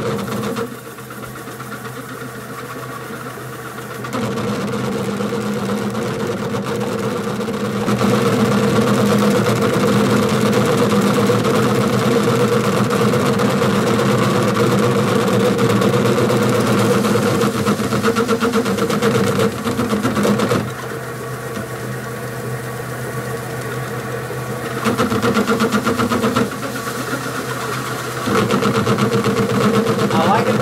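Wood lathe running steadily with a cherry platter spinning on it, a cloth held against the turning wood while the bottom is buffed; the sound swells and falls back several times.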